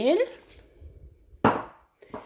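Milk poured from a glass into a plastic bowl of flour, faint, then a single sharp knock about one and a half seconds in that dies away quickly.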